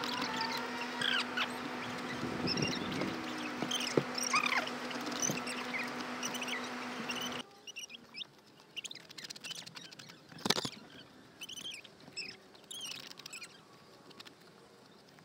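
Gloved hands scratching and scraping at gritty asphalt roof shingles, with birds chirping in the background. A steady low hum in the first half stops suddenly about seven seconds in.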